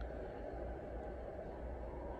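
SNOO smart bassinet playing its soothing white noise, a steady low hiss, while it rocks the baby at a raised level.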